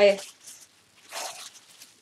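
Clear plastic bag crinkling as it is handled, in two short rustles.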